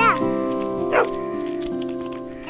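Background film music with long held notes, over which a short falling high cry sounds at the start and a brief cry about a second in.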